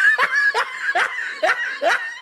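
A high-pitched cartoon-voice snickering laugh: a quick run of about five short 'heh' syllables, roughly two and a half a second, each bending in pitch.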